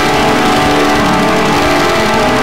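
Noise music: a loud, unbroken wall of layered droning tones over hiss, with no beat and steady loudness.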